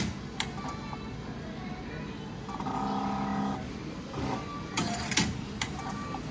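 Meal-ticket vending machine completing an IC-card payment and issuing the ticket and receipt: a steady electronic tone of about a second midway, then a few sharp mechanical clicks near the end as it dispenses.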